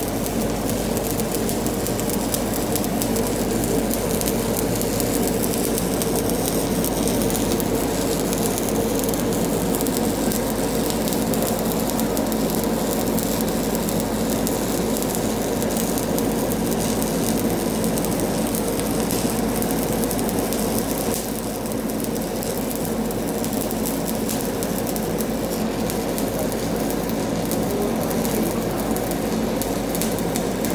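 Shielded metal arc (stick) welding on a steel pipe: the electrode's arc crackling and sizzling steadily as the weld is run, with a brief dip in loudness about two-thirds of the way through.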